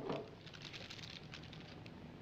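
A glass ketchup bottle set down on a table with a single knock at the start, then faint, irregular crinkling of a paper burger wrapper as the burger on it is handled.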